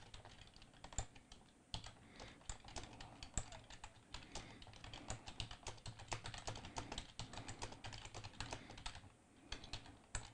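Faint typing on a computer keyboard: quick, irregular keystrokes with a brief pause near the end.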